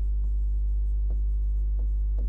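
Chalk writing on a chalkboard: a few faint, separate chalk strokes. They sit over a steady low electrical hum, which is the loudest thing heard.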